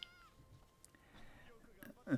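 Near silence, with a faint, brief, high-pitched wavering sound at the very start.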